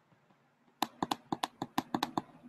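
Typing on a computer keyboard: a quick run of about eight keystrokes starting a little under a second in.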